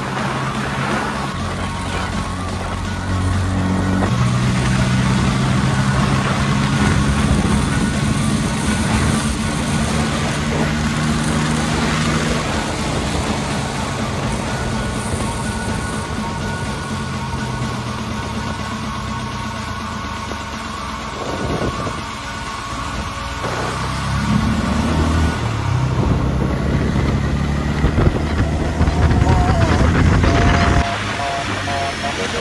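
Motorcycle engine running at riding speed with wind rush on the microphone; the engine note holds steady, dips about twenty seconds in, then rises again as the bike speeds up near the end.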